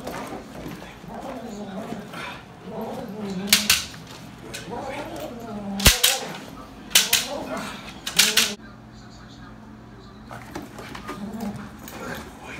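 Belgian Malinois vocalizing in excitement while it jumps and grips on a helper in a bite suit, with a string of sharp smacks, about five, through the middle stretch.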